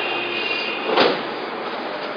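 Steady engine noise of a fighter jet in the air overhead, with a brief louder swell about a second in.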